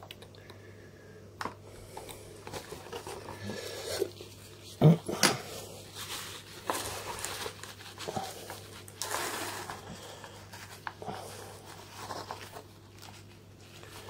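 Quiet handling sounds from working on a camera's corroded battery compartment: a small precision screwdriver scraping and clicking against the stuck batteries and plastic, and a paper tissue rustling as it is wiped. One short, louder sound comes about five seconds in.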